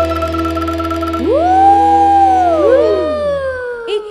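Live qasidah band music at the close of a song: a sustained keyboard chord over a bass note, then several synthesizer tones that slide up, hold and slide back down as the music stops just before the end.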